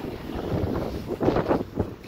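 Wind buffeting the microphone, a rough rushing noise that surges unevenly.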